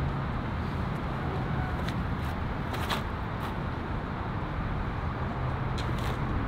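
Steady outdoor background noise with a low hum of distant road traffic, and a few faint clicks.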